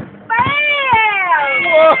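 Excited whoops from the people watching: a long sliding "wooo" that rises and then falls, joined by more overlapping voices from about a second and a half in.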